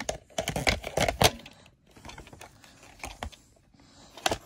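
Plastic clicks and rattles of a VHS cassette being handled and taken from its plastic clamshell case: a quick flurry of clicks in the first second and a half, then a few scattered clicks.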